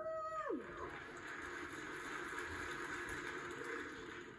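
Audience applauding steadily, heard through a television's speaker.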